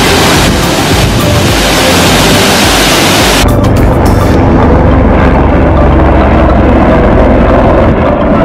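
A nearby waterfall: a loud, steady rush of falling water. About three and a half seconds in it gives way to a duller, deeper rushing noise.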